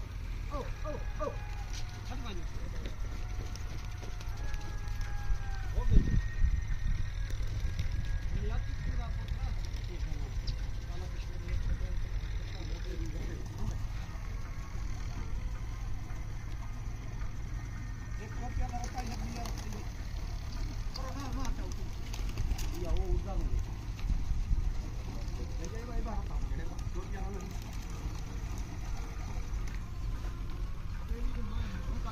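Faint, distant voices calling out over a steady low rumble, with one sharp thump about six seconds in.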